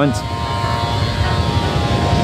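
Wind buffeting the microphone in an irregular low rumble, with breaking surf behind it.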